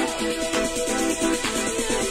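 House music from a DJ set, playing over a club sound system: a fast riff of short repeating notes, about six a second, over a steady dance beat.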